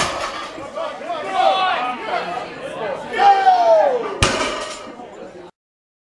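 Onlookers shouting around a deadlift, with a sharp clank of the loaded barbell's iron plates striking the platform about four seconds in. The sound cuts off abruptly near the end.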